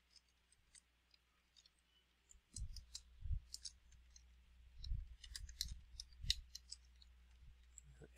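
Faint, scattered clicks of a computer keyboard and mouse, in two loose runs about two and a half and five seconds in, some keystrokes with a soft thud from the desk.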